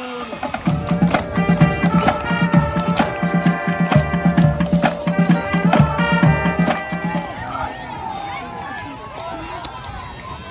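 Pep band with brass, saxophones and drums playing an upbeat tune over a steady beat. The music stops about seven seconds in, leaving crowd chatter and cheering.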